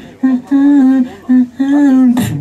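A beatboxer hums into a handheld microphone on nearly one low pitch, in four notes that run short, long, short, long, with faint clicks between them.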